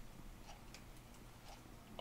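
Near silence: room tone with a low hum and a few faint, irregular ticks.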